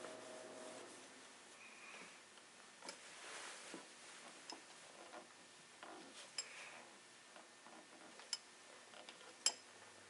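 Faint rubbing of a cloth and small clicks and taps of hands on a Sigma 500mm f4.5 lens barrel as the stuck front locking ring is gripped and twisted by hand without coming loose. The sharpest click comes near the end.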